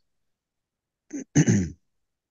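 A person clearing their throat about a second in: a brief catch, then a louder rasp lasting under half a second.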